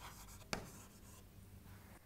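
Chalk writing on a chalkboard: faint scratching strokes, with one sharp tap of the chalk about half a second in.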